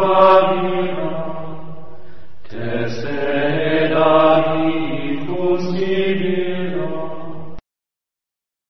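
Sung chant (mantra): a voice holding long notes over a steady low drone. There is a brief break about two and a half seconds in, and the chant cuts off abruptly shortly before the end.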